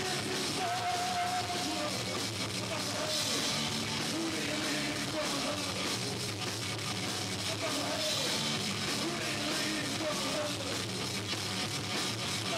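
A punk rock band playing live: electric guitar, bass and drum kit, with a singer's voice over them. The sound is distorted, as recorded through a camcorder's microphone.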